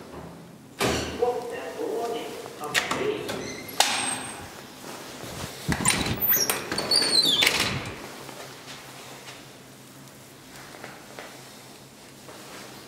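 Elevator landing door and cab gate being opened and shut: a run of knocks and clatters over the first half, with a high falling squeal about seven seconds in. A low steady hum follows.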